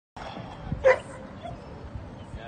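A dog barks once, a single short bark about a second in, over low outdoor background noise.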